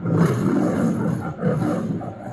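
The MGM lion logo's recorded lion roar, played through a TV's speakers: a long, rough roar, a brief break, then a second shorter roar.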